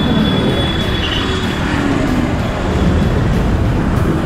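City bus in motion: loud, steady engine and road rumble, with a thin high squeal during the first second and a half.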